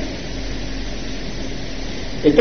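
Steady hiss with a low hum underneath, the background noise of the sermon recording heard in a pause in the speech.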